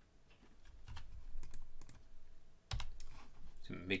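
Computer keyboard keystrokes, scattered and irregular, with a heavier knock about two and three-quarter seconds in.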